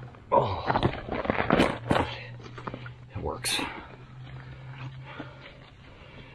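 A hiking backpack being rummaged through: fabric and gear rustling and scraping in irregular bursts, busiest in the first two seconds, with a sharp scratch about three and a half seconds in. A steady low hum runs under the middle of it.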